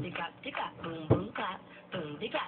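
A young man's voice vocalizing a rhythmic beat, with two heavy low thumps about a second apart.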